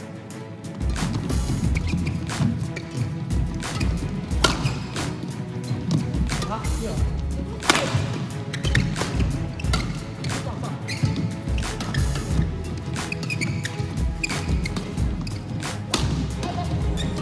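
Badminton rackets striking a shuttlecock in a fast mixed doubles rally: a string of sharp hits at irregular intervals, the loudest a little before halfway, over background music.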